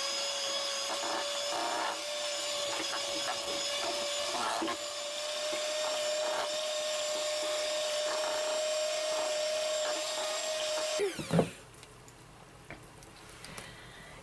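Electric hand mixer running steadily at one speed, its beaters churning a thin, batter-like paper clay mix in a plastic bowl, with a steady whine; it is switched off about three seconds before the end.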